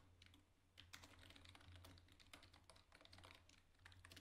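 Faint computer keyboard typing: irregular key clicks as a line of code is typed.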